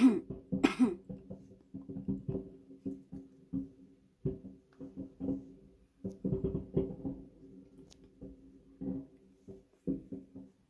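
Many irregular, muffled bangs of distant fireworks heard from indoors through a window glass, with two coughs right at the start.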